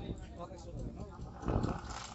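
Background voices talking, with a loud low call about one and a half seconds in.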